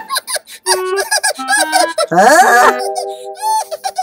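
Squeaky, high-pitched cartoon character vocal sounds and comic sound effects. There is a rising swoop about halfway through, followed by a few held tones.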